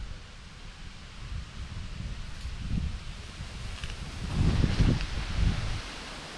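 Rustling of dry leaf litter and twigs as the mushroom picker handles the freshly picked boletus and moves through the undergrowth, loudest for about a second near the end, over a low handling rumble on the microphone.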